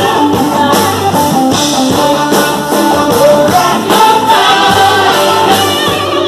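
Live rock band playing loud, with a Flying V–style electric guitar.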